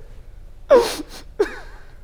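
A man laughing with a breathy gasp: a loud burst about three-quarters of a second in and a shorter one about half a second later.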